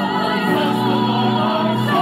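A cast of voices singing held, wavering notes together in a gospel-style musical-theatre song.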